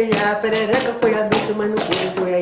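A man singing a calango, a sung challenge verse, over pandeiro strikes. The jingling strikes come a few times a second, loosely spaced, under the long sung notes.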